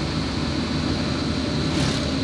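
Steady engine and tyre noise of a car driving on an asphalt road, heard from inside the cabin, with a faint steady high-pitched whine.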